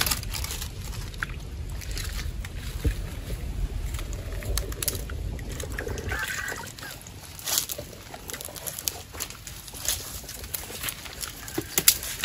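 Hands scooping and splashing in a shallow puddle among leaves and grass, with a low rumble in the first half, then many short, sharp splashes and rustles.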